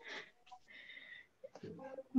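A quiet pause in speech: a faint intake of breath, a brief faint high tone about a second in, and a voice starting up softly near the end.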